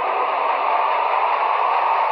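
Steady, loud static-like noise hiss with no distinct events.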